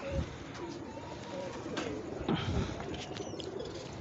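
Domestic pigeons cooing softly and intermittently in the background.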